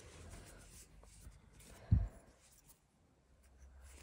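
Faint rubbing and scratching of yarn and a crochet hook being worked through crocheted fabric, with one short low thump about halfway through.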